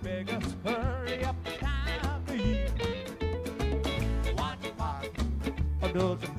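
Live acoustic ska band playing: upright bass notes pulsing underneath acoustic and electric guitar, congas and drum kit, with a wavering violin melody on top.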